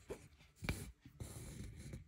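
Embroidery needle and six-strand floss going through Osnaburg cloth stretched taut in a wooden hoop: a sharp tick about two-thirds of a second in, then about a second of soft rasping as the thread is drawn through the fabric.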